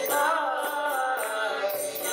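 A man singing a devotional kirtan chant into a microphone while playing a mridanga (two-headed barrel drum), with jingling high percussion keeping time.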